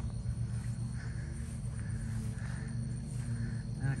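Outdoor garden ambience: insects chirring with a thin steady high tone, over a low steady rumble.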